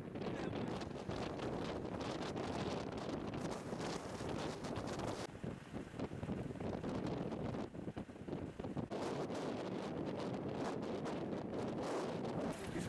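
Wind buffeting the microphone, a rough, fluctuating rumble that eases briefly a couple of times.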